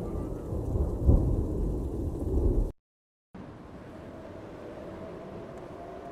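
Low rumbling noise that swells and then cuts off abruptly, followed by about half a second of dead silence and a quiet steady hiss with a faint hum. This is the gap between two songs, one track ending and the next starting.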